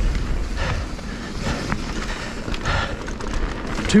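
Mountain bike rolling fast down a rocky dirt trail: tyre noise on dirt and stones and the bike rattling over the ground, with occasional sharp clacks and a steady rumble of wind on the camera microphone.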